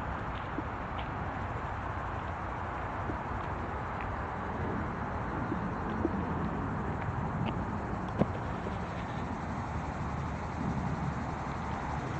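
Outdoor ambience recorded while walking: footsteps on a paved path and wind rumbling on the microphone, with a few faint short chirps. There are two sharp clicks, one about six seconds in and a louder one about eight seconds in.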